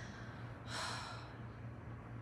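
A woman's breathy sigh, a single unvoiced exhale a little under a second in, let out in pain during late pregnancy.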